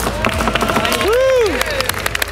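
Metal cutlery tapped and knocked against a tabletop in a run of sharp clicks, with a person's rising-and-falling 'ooh' call about a second in.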